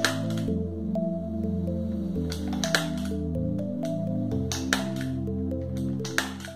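Calm background music with slow sustained chords, over which a hand staple gun snaps sharply several times as it fires staples through a suede fabric strip into the edge of a plywood board: once at the start, twice a little before midway, and twice more near the end.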